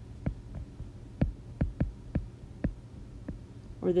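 A stylus tapping and ticking on a tablet's glass screen while handwriting two words: about nine irregular sharp taps over a low steady hum.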